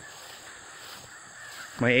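Quiet outdoor ambience with a steady, faint, high-pitched insect drone, typical of crickets or katydids; a woman's voice starts near the end.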